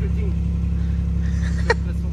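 A steady low mechanical hum, with a single short click near the end.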